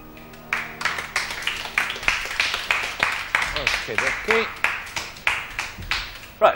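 Studio audience applauding after a solo grand piano performance. The last piano chord is fading at the start, and the clapping breaks in about half a second in. A voice is briefly heard through the applause in the middle.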